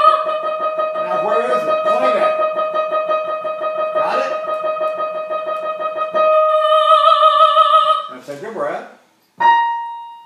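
A lyric soprano holds one long high note with vibrato over piano accompaniment. Near the end the note breaks off in a sliding fall.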